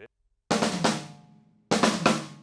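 Drum kit playing the 'bucket of fish' fill twice: a quick run of strokes across the drums finishing on the snare, first about half a second in and again near the end, each phrase ringing out and fading.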